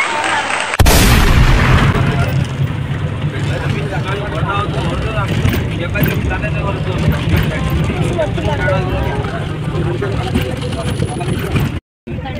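Steady low rumble of a bus heard from inside the passenger cabin, with voices in the background. It begins abruptly about a second in and drops out briefly just before the end.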